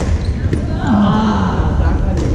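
Badminton racket hitting a shuttlecock: a sharp crack at the very start and a lighter one about half a second later. Then a player's voice calls out briefly, falling in pitch, over the steady hum of the hall.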